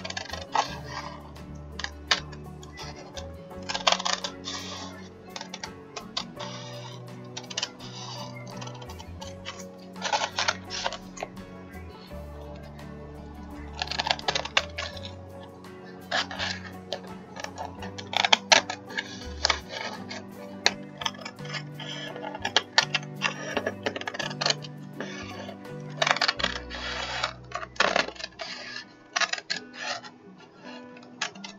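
Scissors snipping through cardstock and napkin paper in clusters of sharp clicks every few seconds, over background music.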